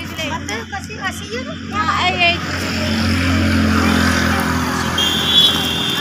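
Street traffic noise: a motor vehicle running close by, swelling from about two seconds in and holding, over a steady low hum. A high steady tone joins near the end, and voices talk in the first two seconds.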